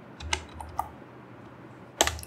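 Computer keyboard typing: about three soft key clicks in the first second as code is typed, then only faint background hum.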